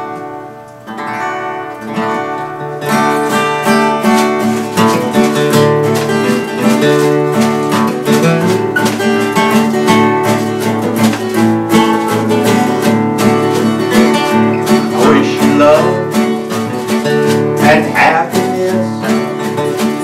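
Two acoustic guitars playing the instrumental intro of a country song. They come in about a second in and fill out from about three seconds.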